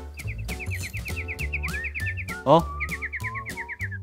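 A rapid chirping sound effect, about seven short rising chirps a second, laid over speech that has been muted, with background music underneath. The chirps break off for a short loud exclamation, "eh? eh?", a little past halfway, then start again.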